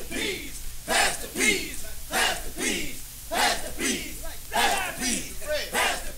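A crowd of voices shouting in a steady, chant-like rhythm, one falling-pitched shout roughly every 0.6 seconds, with no band playing.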